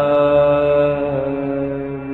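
Khmer Buddhist chanting by several voices together, drawn out on one long held note over a lower held tone.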